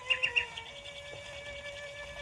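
Nightingale singing in a recorded radio broadcast: three quick high notes, then a fast run of short repeated notes, over a steady held note.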